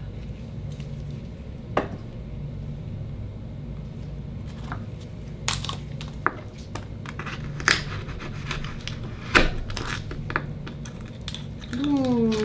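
Akoya oyster being handled and opened with a knife on a wooden cutting board: a few sharp clicks and knocks of shell and metal, with soft wet handling sounds, over a steady low hum.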